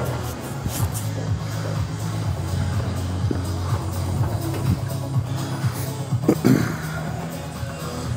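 Background music with a steady, low bass.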